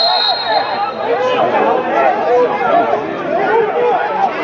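A referee's whistle, one steady high blast ending just after the start, stopping play for a foul as a player goes down. Several men's voices shout over one another on the pitch throughout.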